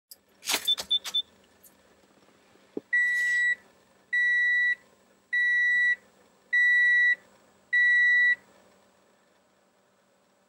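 A car's electronic warning chime beeping five times at an even pace, each beep about half a second long, as the ignition is switched on. Before it, a quick cluster of clicks and rattles with a few short high blips.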